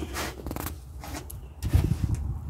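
Faint rustling and scraping, like things being handled or brushed, with a louder low thump near the end.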